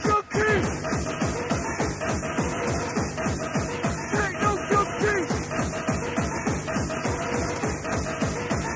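Fast electronic rave music from a live DJ-mixed tape: a rapid, steady kick drum with synth stabs and riffs over it. The sound dips out for a moment just after the start.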